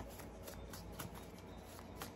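Faint, scattered light clicks and rustles of a hand with long acrylic nails moving over tarot cards spread on a cloth-covered table, over a low steady room hum.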